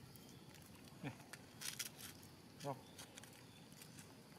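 A man's voice briefly saying "No. Oh." near the end, over quiet outdoor background. About a second in there is a short falling vocal sound, and a few faint sharp clicks follow it.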